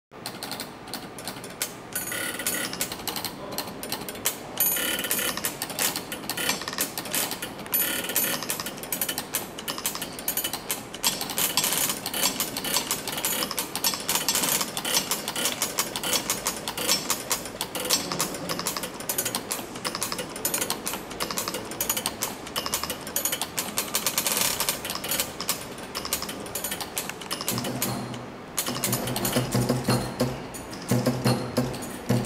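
A mechanical percussion automaton's small wooden beaters clattering in a rapid, dense, irregular stream of clicks and taps. Low pitched notes come in near the end.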